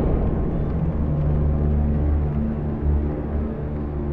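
Deep, steady rumbling drone of sustained low tones opening a film trailer's ominous soundtrack.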